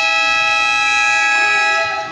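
A single long, steady horn blast sounding in a basketball gym, cutting off near the end.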